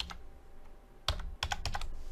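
Computer keyboard keys being typed: a quick run of about half a dozen keystrokes starting about a second in.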